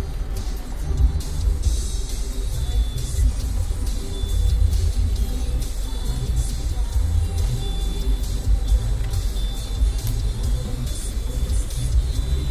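Music playing inside a car's cabin over the steady low rumble of the car stopped in traffic.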